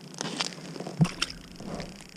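Handling noises as a crappie is held and lowered back to the ice hole: a few short clicks and knocks, with one louder thump about a second in.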